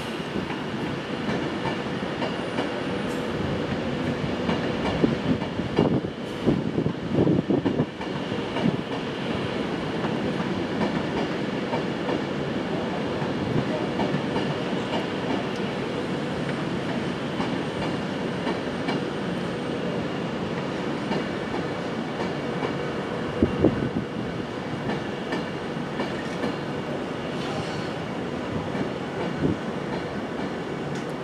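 Class 390 Pendolino electric train moving slowly through the station, a steady rolling hum with clickety-clack from the wheels. There is a cluster of louder knocks about a quarter of the way in and a couple more about four-fifths of the way through.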